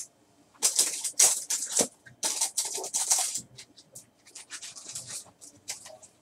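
Plastic rustling and scraping of a trading card being slid into a protective sleeve: a run of loud scratchy rustles in the first few seconds, then quieter, scattered rustles and light ticks.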